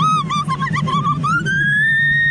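A young woman screaming on a slingshot ride: short high-pitched yelps, then from about a second and a half in one long held scream that rises in pitch. A steady low hum runs underneath.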